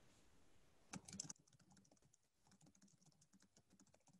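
Faint typing on a computer keyboard: a quick cluster of louder keystrokes about a second in, then a run of lighter, rapid keystrokes.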